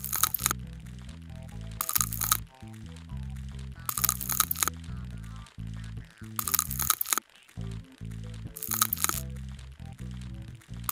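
Crackling, crunching sound effect of a scalpel scraping ticks off skin. It comes in five short bursts about two seconds apart, over background music with steady low notes.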